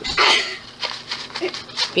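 A short breathy sound about a quarter second in, then scattered crinkles and rustles of cracker packaging as a hand digs into the box.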